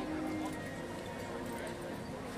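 Crowd of people chattering on a busy street, with music playing and a held tone standing out in the first half-second.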